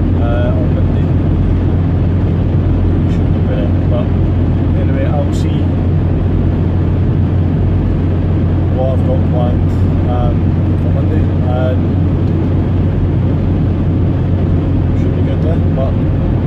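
Steady low drone of a small van's engine and tyres heard from inside the cab while driving, with a few faint spoken sounds over it.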